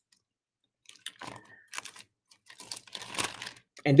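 Thin Bible pages rustling and crinkling in short, irregular bursts as they are leafed through. The bursts begin about a second in, after a moment of near quiet.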